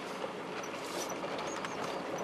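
Vehicle driving on a gravel road, heard from inside the cab: steady tyre and road noise with small crackles from the gravel and a few short high squeaks.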